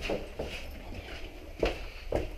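Footsteps going down stairs: a few irregular steps.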